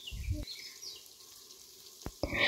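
Quiet outdoor background with a few faint, short bird chirps and a couple of soft low thumps in the first half second.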